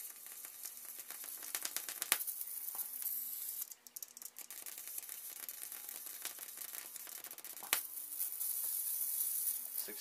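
High-voltage arc from a flyback transformer driven by a ZVS driver pushed toward 60 volts: a continuous crackling hiss made of dense rapid snaps. It drops out briefly about four seconds in, and two louder sharp snaps stand out, one about two seconds in and one near the end.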